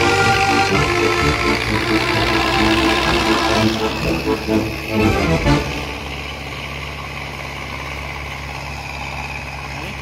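A song with singing plays and stops about five and a half seconds in; after that a vehicle engine runs steadily at low revs.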